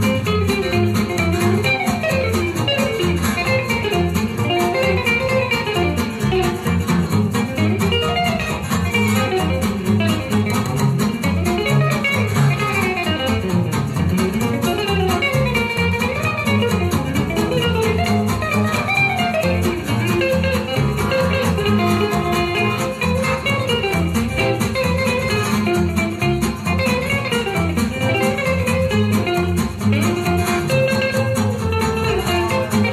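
Gypsy swing record playing: a lead acoustic guitar and a violin over a steady strummed rhythm guitar.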